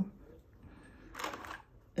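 Quiet handling of a Glock 43X slide as the original barrel is taken out, with one short soft scrape a little over a second in.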